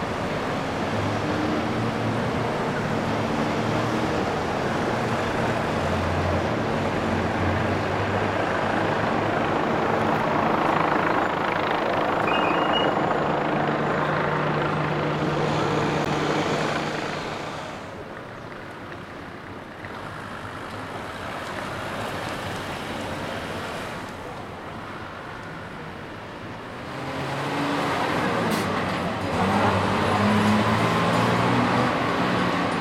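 A column of police vans and trucks driving past, engines running over tyre and road noise. The traffic is loudest through the first half, drops away for several seconds, then swells again near the end as another vehicle draws close.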